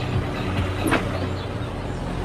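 Street and car noise from a film soundtrack: a steady low rumble of a car engine and traffic, with one short knock about a second in.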